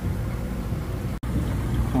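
Steady low background hum and rumble, which cuts out for an instant just past the middle.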